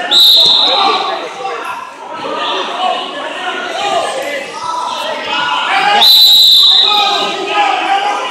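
A referee's whistle blown twice, each blast about a second long, the first right at the start and the second about six seconds in, over crowd chatter.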